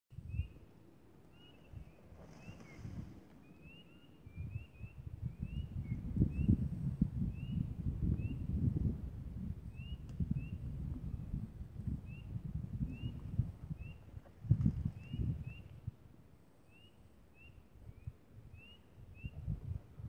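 A chorus of spring peepers calling: short, rising single peeps, about one or two a second throughout. Under them runs a low, uneven rumble on the microphone, loudest from about five to nine seconds in and again briefly near fifteen.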